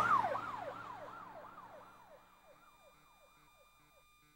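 Siren sound effect ending the dance's music track, played over the hall's speakers: a repeating falling wail, nearly three sweeps a second, fading out to near silence about halfway through.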